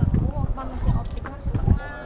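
Wind buffeting the camera microphone in irregular low gusts, with people's voices in the background and a brief higher-pitched voice near the end.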